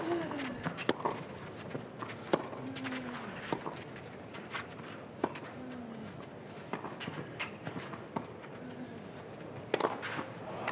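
Tennis rally on a clay court: a tennis ball struck by rackets about every second or so, with short grunts that fall in pitch from the players on several shots. Footsteps on the clay sound between strokes.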